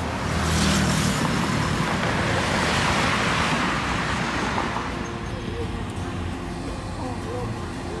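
Road traffic: a vehicle passes close by, its tyre and engine noise swelling over the first couple of seconds and fading away by about five seconds in, over a steady background traffic hum.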